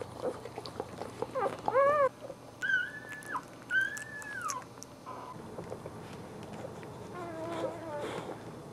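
Newborn Boxer puppies squeaking and whining: a short arched cry just under two seconds in, then two longer high-pitched squeals at about three and four seconds that drop off at the end, and a lower wavering whimper near the end.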